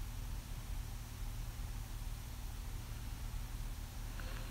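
Quiet cabin of the Jaguar XJL with its supercharged V6 idling: a faint steady low hum under an even hiss.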